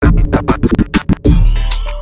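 DJ scratch cuts over an electronic beat at a transition in a gengetone mix: a rapid run of short chopped hits, then deep bass comes in just past halfway and fades away.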